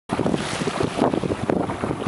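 Strong wind buffeting the camera microphone: a loud, uneven rush of gusts.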